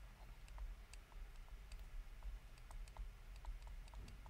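Faint, irregular light clicks and taps of a stylus tip on a pen tablet as handwriting is written, a few clicks a second, over a low steady hum.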